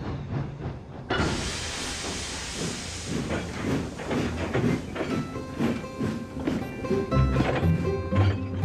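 Background music, with a sudden hiss of steam from a steam engine about a second in that fades away over the next couple of seconds.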